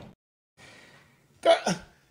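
A brief hush, then a short two-part vocal noise from a person about a second and a half in.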